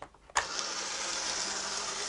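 A sharp click as a push button is pressed, then a steady whirring hiss with a low hum from the small electric motor of an OO9 narrow-gauge model locomotive as it starts to run.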